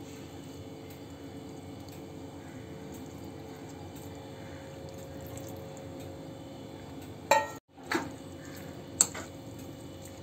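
Milk pouring from a steel vessel onto grated carrots in a hot non-stick pan, a steady quiet liquid sound. Near the end a metal spoon knocks against the pan a couple of times as the mixture is stirred.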